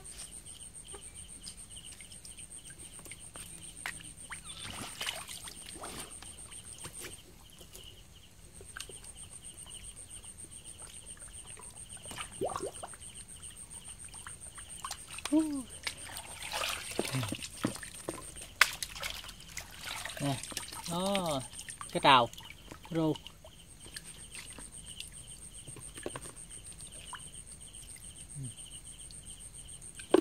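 Water splashing and sloshing as a plastic basket is dipped and swirled through shallow water, loudest in the middle of the stretch. Throughout, the steady high chirring of night insects runs on two pitches, with a couple of brief breaks. A few short wavering, voice-like calls come in the second half.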